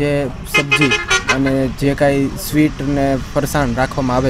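A man speaking continuously, with no other clear sound besides the voice.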